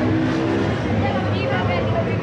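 Busy street sound: people talking nearby over the steady low rumble of passing traffic, with voices coming up in the second half.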